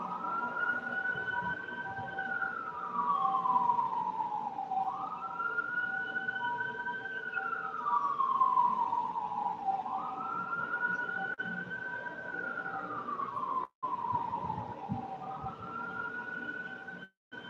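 A siren wailing in slow cycles: each rises quickly, holds, then slides slowly back down, about once every five seconds, three times over. The sound cuts out for a moment near the end.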